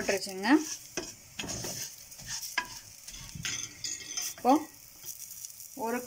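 Wooden spoon stirring and scraping rinsed raw rice and moong dal around an aluminium pressure cooker as they are sautéed in ghee over the flame, with scattered short scrapes.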